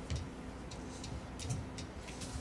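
Scattered light clicks and two soft thumps about a second and a half apart, over a faint steady hum.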